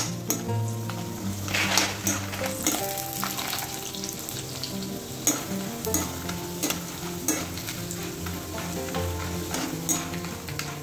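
Tapioca pieces sizzling as they deep-fry in hot oil in a steel kadai, stirred with a perforated steel ladle that clinks and scrapes against the pan several times.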